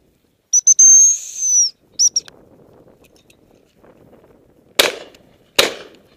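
A gundog whistle blown: one held high note for about a second that drops at the end, then two short pips. Near the end, two shotgun shots fired in quick succession, under a second apart.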